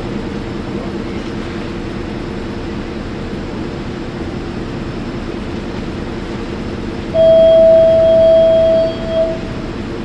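Boat engine running steadily with a low hum. About seven seconds in, a loud single-pitched tone sounds for about two seconds and then stops.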